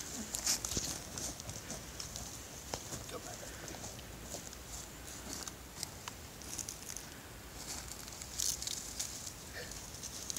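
Dry pine straw, leaves and grass rustling and crackling in short irregular bursts as the ground litter at the base of a pine tree is stirred, with a few light snaps of twigs. The loudest bursts come about half a second in and again near the end.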